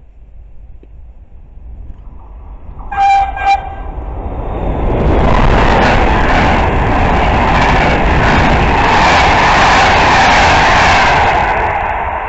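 A train horn sounds two short blasts about three seconds in, then a passenger train of Thello coaches passes on the near track, the loud rush of its wheels and coaches on the rails lasting about seven seconds and fading near the end.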